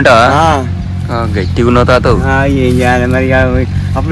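A man's voice with strongly rising and falling pitch, then one long drawn-out note held for about a second and a half, over a steady low hum.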